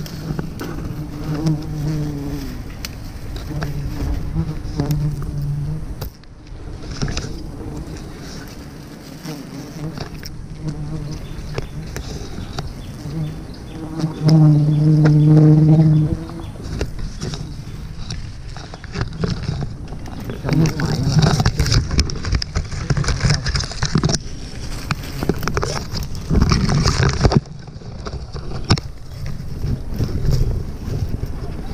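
Wild honeybees buzzing close around the climber as their nest is smoked, the buzz swelling and fading as bees pass, loudest for a couple of seconds halfway through. Rustling bursts come through in the second half.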